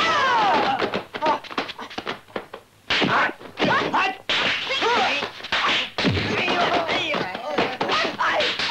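Kung fu film fight sound effects: a rapid run of punch and kick impacts mixed with the fighters' yells, grunts and cries of pain. About half a second in, a long falling cry stands out.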